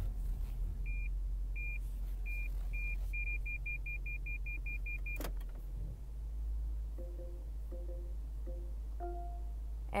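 Short, high electronic beeps from the Lexus RC F's infotainment display as its backup-camera guideline settings are changed. Four single beeps come about half a second apart, then a quick run of about a dozen beeps over two seconds, ending in a click. A steady low hum runs underneath.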